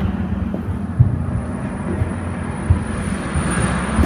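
A steady low rumble with two dull thumps, one about a second in and one near three seconds.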